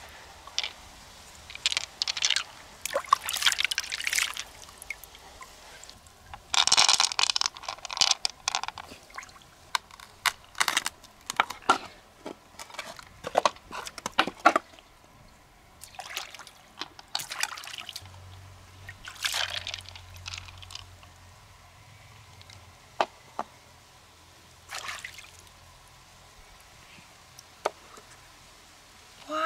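Wet freshwater mussel shells and pearls being handled: irregular spells of water pouring and dripping, with a few sharp clicks of shell against shell or stone.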